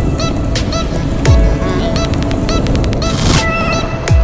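Background music: a track with a deep, falling bass hit about a second in and a quick run of repeating short, high, honk-like notes over a steady beat.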